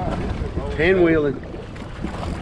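A man's drawn-out "Oh" about a second in, rising and falling in pitch, over steady wind noise on the microphone and the sound of open sea.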